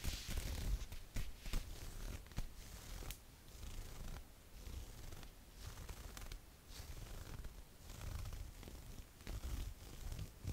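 Long acrylic fingernails scratching and rubbing a fishnet mesh T-shirt worn over a bra: irregular, quick scratchy strokes with soft rustling of the fabric.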